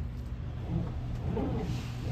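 Bizerba GSP HD automatic meat slicer running in automatic mode, its motor-driven carriage travelling back and forth at the longest stroke and slowest speed. A steady low motor hum, with a tone that wavers up and down in pitch in the second half.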